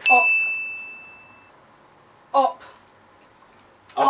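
A single bell-like ding sound effect: one clear, high, pure tone that strikes suddenly and fades out over about a second and a half.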